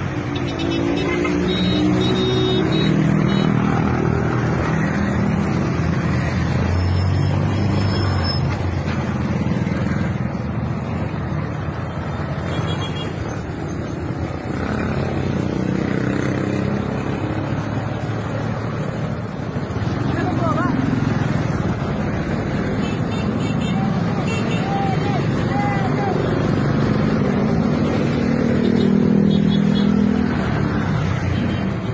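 Road traffic from a moving vehicle: car and motorcycle engines running steadily, with voices mixed in.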